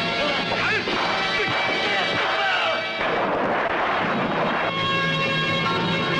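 Film soundtrack mix of loud, dense sound effects over music, with curving pitch glides in the first few seconds and a rush of noise about three seconds in. From about five seconds in, steady sustained music notes take over.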